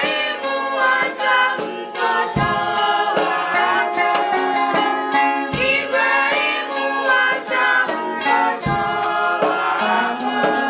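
Church choir and congregation singing a hymn, with an electric guitar playing along. A low thump comes about every three seconds.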